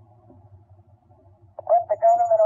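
A voice on an old interview recording pauses, leaving a low steady hum, and starts speaking again about one and a half seconds in.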